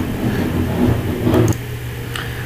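A low, steady hum in the background, dropping in level about one and a half seconds in.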